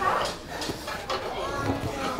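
Short grunts and effortful breaths from grapplers rolling on padded mats, with a few soft thuds of bodies shifting on the mat.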